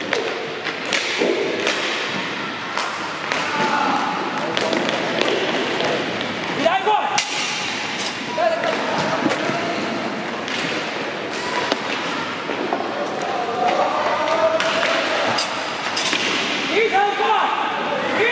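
Inline hockey in play on a wooden gym floor: repeated sharp knocks of sticks striking the puck and floor, and thuds against the boards.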